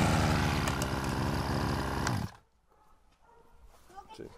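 Robin NB145 brush cutter's small two-stroke engine running at low speed after being revved, then stopping abruptly a little over two seconds in.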